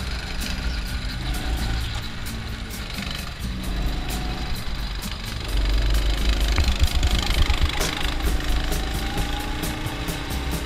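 Go-kart engine running as the kart laps the track, louder from about halfway through. Background music with a steady beat plays over it.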